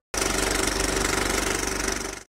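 Loud, rapid mechanical rattle from a logo sound effect, many pulses a second, starting abruptly and cutting off suddenly about two seconds later.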